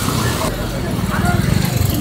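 A low, steady engine rumble, with faint voices over it.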